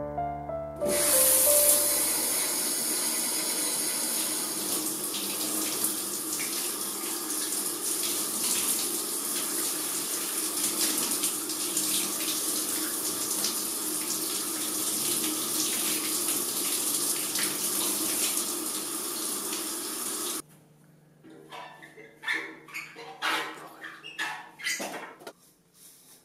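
Running water: a steady, full rush that starts about a second in and cuts off suddenly near the end, followed by a few faint, short irregular sounds.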